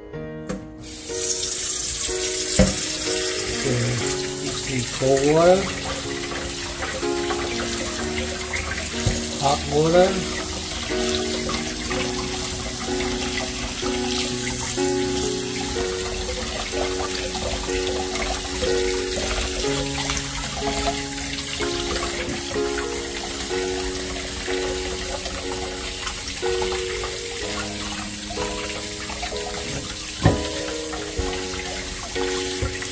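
Water running from a newly installed pull-down kitchen faucet into a stainless steel sink and splashing over a hand, starting about a second in and running steadily, as the new faucet gets its first run. Background music plays throughout.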